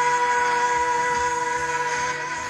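A woman singing one long held note over a backing track, the pitch steady.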